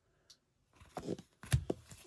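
Trading cards being handled and slid apart between the fingers: soft rustles and small clicks of card stock, with a sharper knock about one and a half seconds in.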